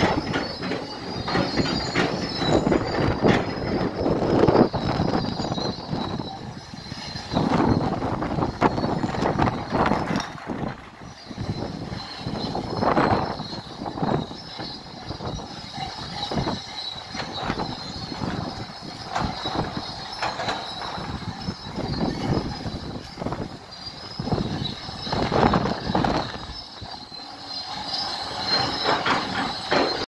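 Tracked heavy construction machinery, an excavator and a bulldozer, at work: engine noise with a steady high metallic squeal and many sharp clanks. The loudness swells and falls several times.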